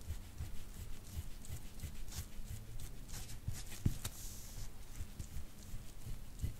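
Faint strokes of a metal soft-tissue scraping tool over oiled skin on the upper back, with soft irregular low knocks. A few strokes stand out briefly, about two and four seconds in.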